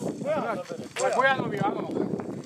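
Speech: people's voices talking in two short stretches, over a steady low background murmur.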